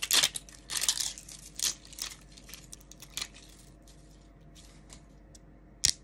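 3D-printed plastic brim and support material being peeled and snapped off a printed model: a quick run of crackles and snaps over the first few seconds, then quieter, with one sharp snap near the end.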